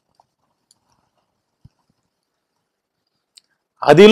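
Near silence with a few faint small clicks, then a man's voice starts speaking again near the end.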